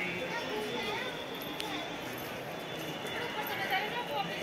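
Indistinct voices of people talking, over a steady background din.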